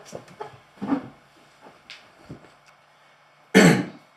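A man breathing out in soft chuckles, then one loud cough or throat-clear a little before the end.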